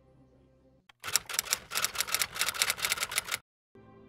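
Typewriter keystroke sound effect: a quick run of clacks, about six or seven a second, starting about a second in and stopping abruptly some two and a half seconds later. Faint sustained music tones fade out before the clacks and return just before the end.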